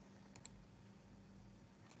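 Near silence with a couple of faint clicks close together about a third of a second in, from a computer mouse.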